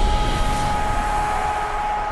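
Tail of a logo-intro sound effect: a low rumbling noise with two steady high tones held over it, slowly fading.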